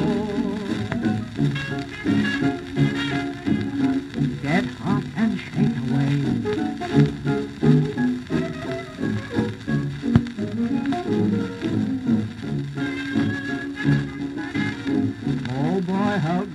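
Instrumental break of a 1929 dance band record playing on a turntable. The record is a worn 78 rpm shellac disc, and its surface noise runs under the band, with a single click about ten seconds in.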